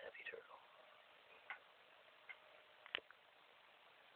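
Near silence with a few faint, sharp clicks, the loudest about three seconds in, and a brief faint voice-like sound at the start.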